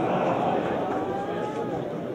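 A long drawn-out shout from the crowd, held on one pitch and rising slightly for about a second and a half, over spectators' chatter at a football match.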